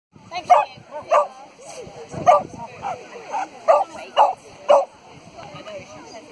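A dog barking repeatedly in short, sharp, high barks, about seven in five seconds: the excited barking of an agility dog held at the start line before its run.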